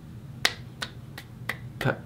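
Fingers snapping, about six sharp snaps a third of a second apart, coming faster toward the end.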